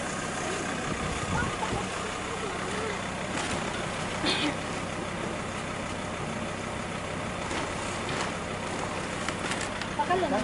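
Pickup truck engine idling steadily, with a few light knocks and a brief rustle about four seconds in.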